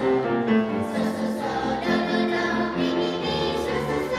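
Middle-school children's choir singing held notes in several parts.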